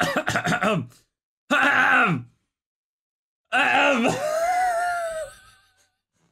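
A man laughing in quick bursts, then letting out wordless vocal sounds. The last and longest of them, a few seconds in, slides down in pitch, levels off and trails away.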